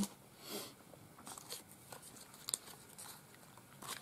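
Faint rustling of paper and washi-style sticker pieces being handled and gathered up, in a few short rustles with a small tick about two and a half seconds in.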